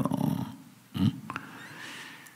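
A man's voice: the tail of a spoken word, then about a second in a single short questioning grunt, "eung?", followed by a couple of faint clicks. The rest is quiet room tone.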